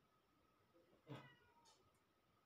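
A cat meowing once, a short call that falls in pitch.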